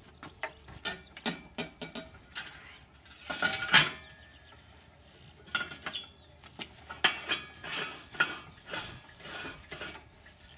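Metal sections of a homemade oil-distillation still clinking and clanking against each other as they are fitted together: a run of separate knocks, the loudest cluster about three and a half seconds in and another busy stretch near the end.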